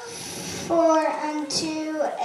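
Children's voices singing together, coming in just under a second in with long held notes.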